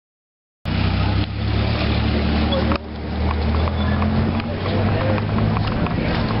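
After a moment of silence the sound cuts in abruptly: a motor vehicle's engine running steadily amid street noise, with indistinct voices.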